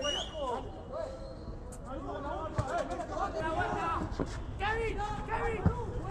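Football players shouting and calling to each other on the pitch, several voices overlapping, with a few sharp thuds of the ball being kicked.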